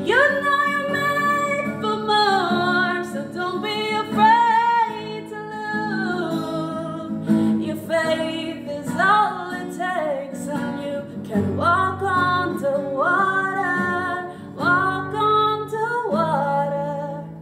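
A woman singing a pop ballad solo with long held notes that slide between pitches, over a guitar accompaniment.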